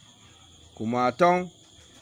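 Steady high-pitched insect trilling behind a man's voice reading a short phrase about a second in.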